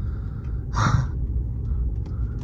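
Steady low road rumble inside a slowly moving car's cabin, with one short breathy burst just under a second in.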